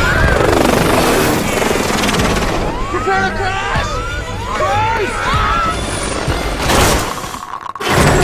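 Film sound mix of a helicopter going down: several people yelling and screaming in short rising-and-falling cries over a film score. Near the end the sound drops away briefly, then a loud crash begins.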